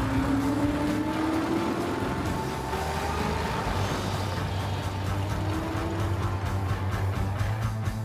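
Film score: a low sustained drone with held tones above it, some slowly rising in pitch.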